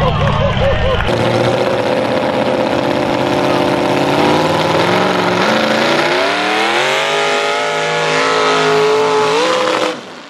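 Mud-drag racing vehicle's engine running at high revs, then climbing steadily in pitch from about six seconds in as it accelerates down the mud pit.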